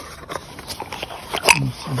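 Light rustling and small clicks of a cardboard box being handled around a brass automatic air vent, with one sharper click about one and a half seconds in.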